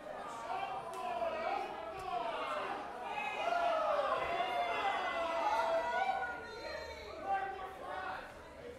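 Crowd chatter in a large room: many overlapping voices talking at once with no music playing, and a brief knock near the end.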